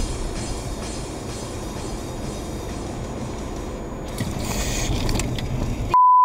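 Steady low rumble of a car's road and engine noise heard from inside the cabin while driving, swelling slightly near the end.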